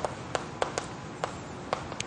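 Chalk on a blackboard as a word is written: a string of about six short, sharp taps at irregular intervals.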